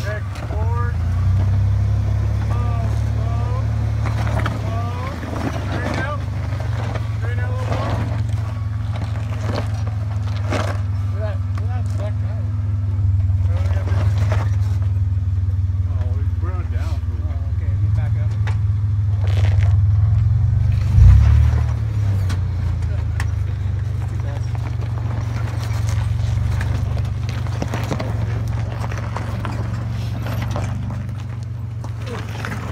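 Pickup truck's engine running low and steady as the truck crawls over rock ledges, with one heavy thump about two-thirds of the way through.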